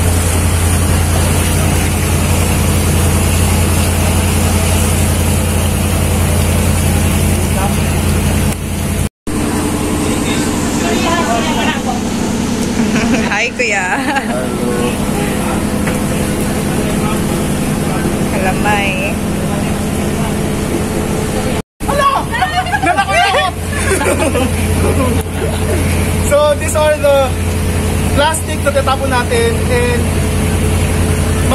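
A boat's engine running steadily with a low hum, along with wind and water noise. People's voices come and go over it, most clearly in the middle stretch and near the end.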